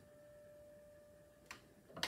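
Near silence: the faint tail of a Steinway grand piano note dying away, followed by a small click about one and a half seconds in.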